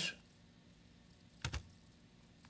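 A single short click of a computer mouse button about one and a half seconds in, against quiet room tone.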